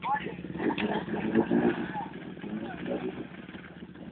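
Off-road vehicle engines running steadily, with people's voices calling out over them.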